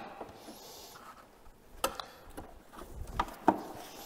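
A few light clicks and knocks, mostly in the second half, as a snowmobile front bumper is handled and set into place on the chassis.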